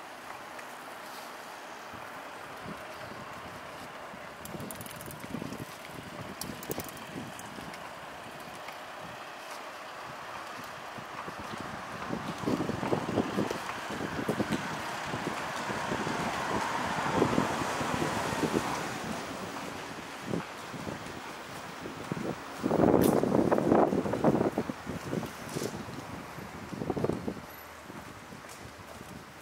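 City street ambience with a steady background hum of traffic, and wind buffeting the microphone in irregular gusts that grow stronger in the second half, the loudest about two-thirds of the way through.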